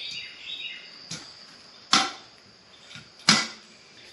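Steel parts of a motorcycle tire-balancing stand being handled and snapped into place: a light knock, then two sharp metal clicks about a second and a half apart.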